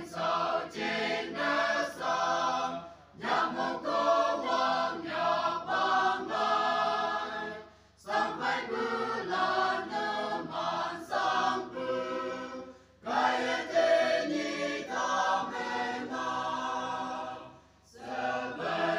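Choir singing in four long phrases of about four to five seconds each, with a brief breath-pause between them.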